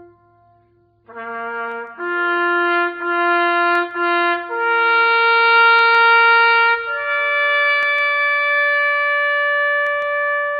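A bugle call on a solo brass horn. A short low note comes about a second in, then a few tongued repeated notes, then two long held notes, each a step higher.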